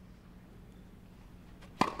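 A quiet stretch of low court ambience, then near the end a single sharp crack of a tennis racquet striking the ball on a serve.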